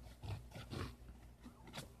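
A serrated knife blade sawing through a sheet of paper: a few faint strokes, with a sharper cut sound near the end. The blade is sharp, but not sharp enough to cut the paper cleanly.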